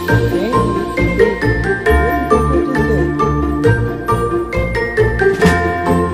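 Christmas-style music with jingling bells, held melody notes and a steady bass beat.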